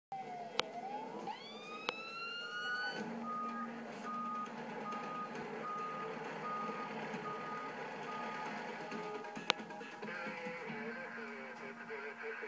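A fire truck's siren winds up, rising in pitch over the first few seconds, followed by a steady beeping about one and a half times a second, like a truck's back-up alarm, over the running truck. Heard through a television speaker.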